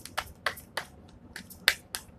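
Sharp, separate snapping clicks of a tarot card deck being handled, cards flicked and snapped against each other, about six irregularly spaced over two seconds, the loudest near the end.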